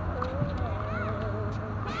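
A bird calling, one long wavering note with short arched chirps, over a steady low rumble; a tennis racket strikes the ball near the end.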